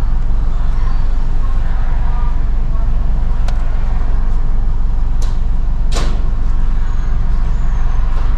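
Car engine idling, a steady low rumble heard from inside the cabin, with three short sharp clicks, the loudest about six seconds in.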